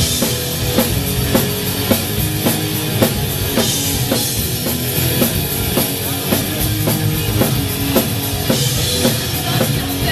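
Rock band playing live: distorted electric guitars and electric bass over a steady, driving drum-kit beat.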